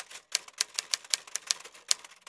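Typewriter keys clacking in a quick run of sharp strokes, about eight a second, as a transition sound effect.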